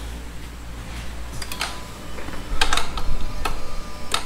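A handful of light clicks and taps, scattered and irregular, over a faint steady hum and a low rumble; no engine is running.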